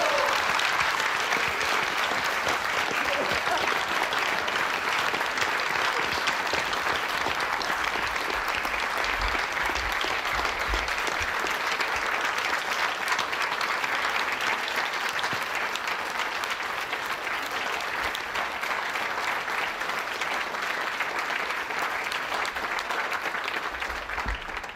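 A roomful of people applauding steadily and warmly, the clapping easing off near the end.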